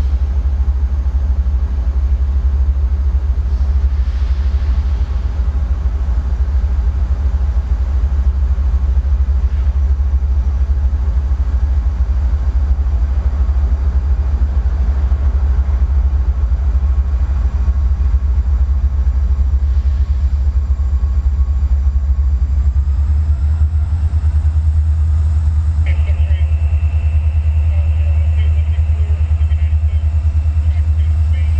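Steady, heavy low rumble of a diesel locomotive engine running out of sight down the line. Its pitch rises about three-quarters of the way through, as if the throttle is being opened, and a higher steady tone joins near the end.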